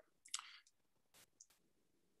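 Near silence: a short faint hiss early on, then two faint clicks a little over a second in.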